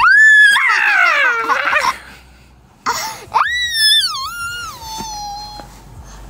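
A toddler's high-pitched playful squeals: a long shriek right at the start that breaks into falling, laugh-like squealing, then a second long squeal about three seconds in that slides down in pitch.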